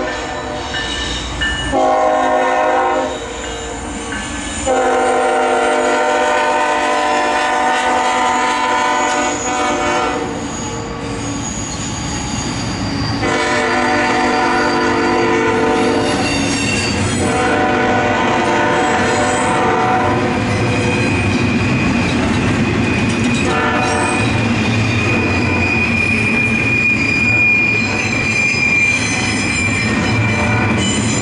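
CSX GE ES44AH diesel locomotive sounding its multi-chime air horn, loud, in a series of long blasts with short breaks. After about two-thirds of the way through the horn stops, and the passing intermodal freight cars' wheels carry on with a steady high squeal over the rolling rumble and clatter.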